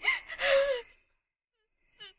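A woman's crying sob: one gasping, wavering cry lasting about a second.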